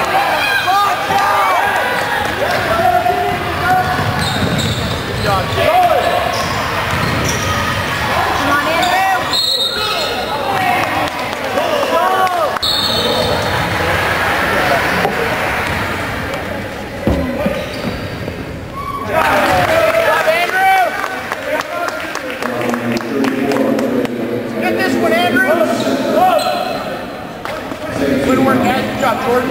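Gymnasium basketball game sounds: a crowd of spectators talking and shouting, sneakers squeaking on the hardwood floor, and a basketball bouncing, echoing in the hall.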